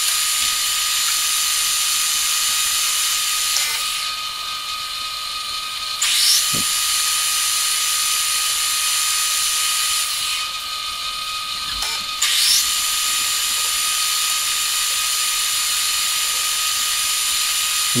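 Geared engine lathe running, turning a 1018 mild-steel spindle with a carbide insert: a steady whine from the headstock gears under a high hiss of the cut. The hiss falls away twice, about four and ten seconds in, and comes back each time with a short rising sweep.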